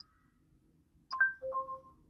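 Google Assistant chime from the car's Android Auto system: a short click, then two brief electronic tones about a second in, the second lower than the first, signalling that the spoken query has been taken.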